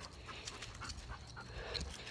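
Faint panting breaths.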